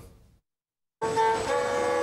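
About a second in, after a brief silence, a Yakut kyrympa, a bowed fiddle strung with horsehair, starts playing long held notes that slide between pitches.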